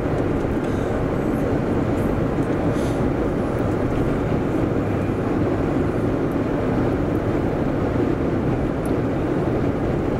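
Steady road and engine noise inside a moving car's cabin, holding an even level.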